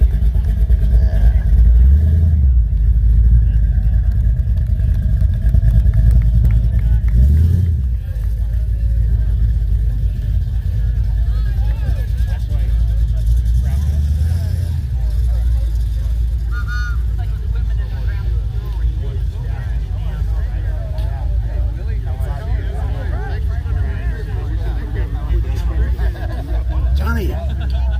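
1967 Chevrolet El Camino's engine running as the car pulls slowly away, with wind gusting on the microphone. Crowd chatter follows as the engine fades.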